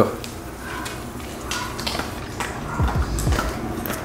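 A husky coming up to snatch a treat off a hard floor: scattered light clicks and taps of claws and mouth. In the last second, low rumbling thuds as its fur brushes against the camera's microphone.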